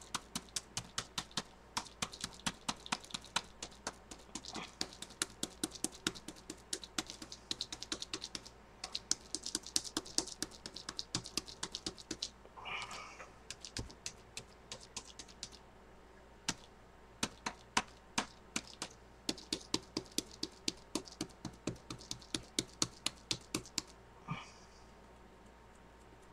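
Rapid light tapping, about five taps a second in runs broken by short pauses.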